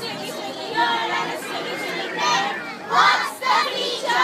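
A roomful of young children chattering and calling out over one another, with several louder high-pitched shouts in the second half.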